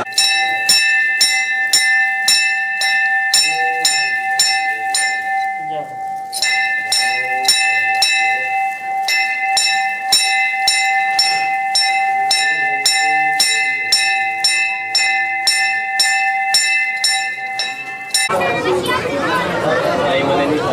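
Brass puja bell rung continuously, about two strokes a second, its ringing held steady by the repeated strokes. The strokes pause briefly about six seconds in, then resume, and the ringing stops suddenly near the end.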